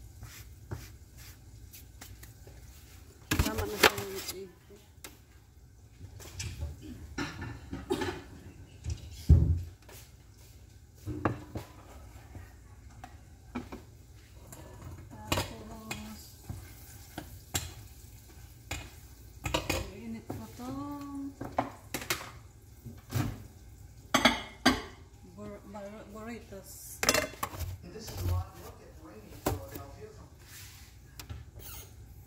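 Metal kitchen utensils clinking and knocking against a frying pan, bowls and a plate in irregular sharp clatters, as okra is turned in the pan.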